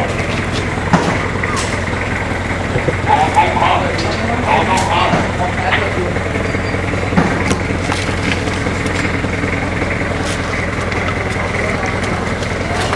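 An engine idling steadily throughout, with brief muffled voices a few seconds in and scattered sharp clicks.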